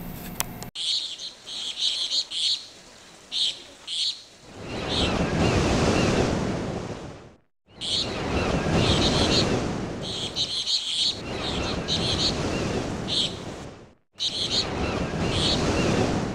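Birds chirping in short high bursts over swells of wave-like wash that rise and fall over a few seconds each, with two brief drops to silence.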